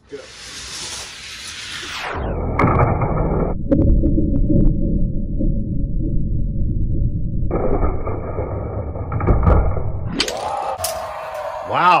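Die-cast toy cars rolling down a plastic drag-strip track. Then the same sound is slowed down for a slow-motion replay, turning into a deep, muffled rumble for several seconds before it speeds back up near the end.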